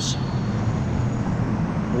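Street traffic passing close by: a steady rumble of car and truck engines and tyres.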